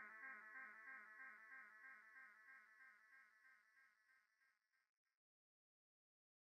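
Near silence: the last of a background music track fading out as a faint, evenly pulsing held tone over the first few seconds, then silence.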